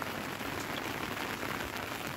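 Steady rain falling on wet surfaces, an even hiss with no break.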